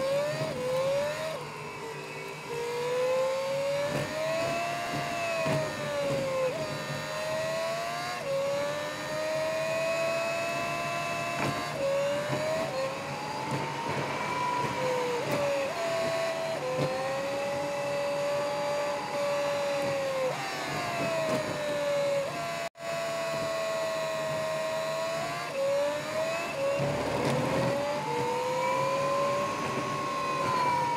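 Volvo FMX truck heard from inside the cab on the move: a drivetrain whine whose pitch climbs and sags with engine speed and steps down abruptly every few seconds at each gear change, over a low running rumble.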